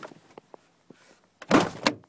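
Damaged Ford Ranger pickup door being worked open from the inside: a few light clicks from the handle and latch, then two loud clunks about a second and a half in and just before the end as the door breaks free.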